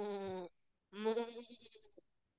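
A cow's moo, played as the animal cue: a long, steady call ending about half a second in, then a second, shorter moo that falls in pitch.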